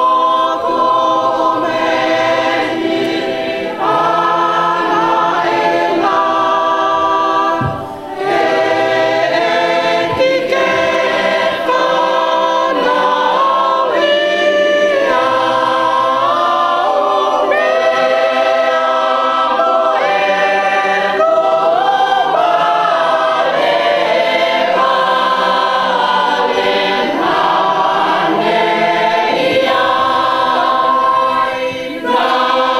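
A standing group of Tongan guests singing a hymn together in several-part harmony, unaccompanied, with a short break about eight seconds in.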